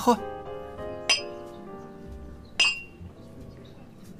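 Drinking glasses clinking together in a toast, twice, about a second and a half apart, each a sharp chink with a brief high ring.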